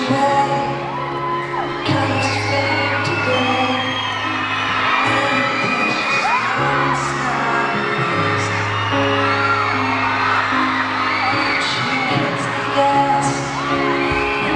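Live piano on a Baldwin grand, playing slow held chords that change every couple of seconds, amplified through an arena sound system. Many high-pitched fan screams rise and fall over the music.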